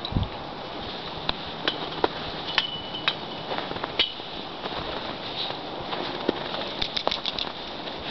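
Crunching in snow: a series of sharp crunches roughly every half second, then a quicker run of crunches near the end, over a steady hiss.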